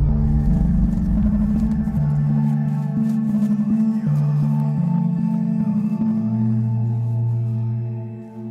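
Ambient film-score music: held low drone notes that change pitch every two seconds or so, with a faint shimmering layer above.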